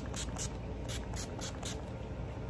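Makeup setting spray misted onto the face from a pump bottle: a quick run of short hissing sprays, about four a second, that stops shortly before the end.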